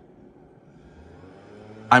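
Faint steady background noise with no distinct events, a low hum showing faintly around the middle; a man's voice starts right at the end.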